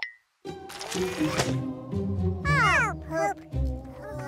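Cartoon soundtrack: background music with wordless, creature-like vocal sounds. After a short silence at the start, a quick glide falling in pitch comes about two and a half seconds in.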